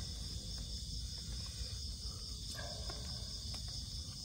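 Crickets chirping in a steady, high-pitched night chorus, with a few faint small clicks and rustles from food being handled in plastic containers.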